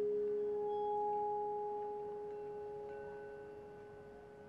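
Vibraphone notes ringing on and slowly fading. A low note struck just before keeps sounding, and a higher tone swells in about half a second in and holds.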